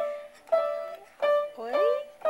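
Upright piano: single notes pressed by a baby's hand, three in a row about half a second apart, each ringing and fading before the next.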